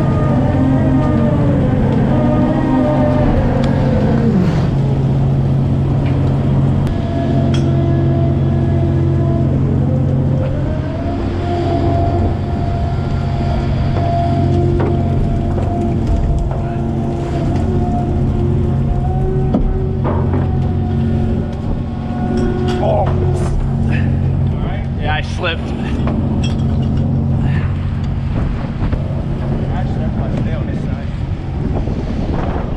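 Trawler deck machinery: a steady low drone of engines and hydraulics under the whine of the hydraulic net drum hauling the trawl. The whine slides down in pitch over the first few seconds, then holds steady and steps up about twenty seconds in. A few knocks and rattles come near the end.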